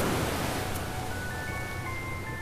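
Surf washing onto a sandy beach, fading, with soft, high chiming notes of music beginning about a second in.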